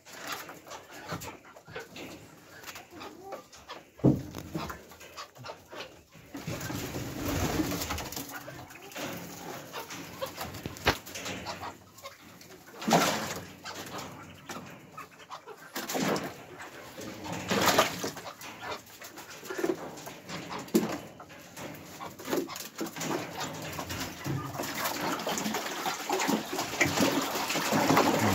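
Mandarin ducks bathing in a shallow plastic tub of water, splashing in short bouts through the middle and more steadily near the end, with bird calls alongside.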